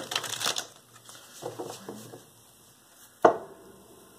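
A large deck of tarot cards being riffle-shuffled: a quick fluttering rattle of cards at the start, softer handling after it, and one sharp tap about three seconds in.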